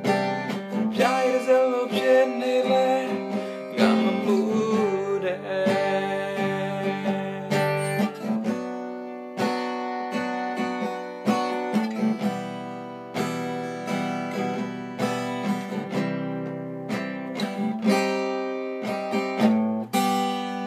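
Acoustic guitar strummed in a steady rhythm, with a man singing over it for the first few seconds, then the guitar playing on alone.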